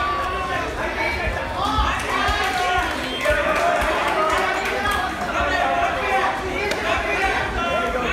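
Several voices calling out and talking over one another in a large, echoing hall, with crowd chatter behind them: spectators and corner coaches at a jiu-jitsu match.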